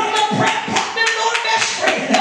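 A woman's amplified voice drawn out in long sung notes, over steady rhythmic clapping at about three to four beats a second.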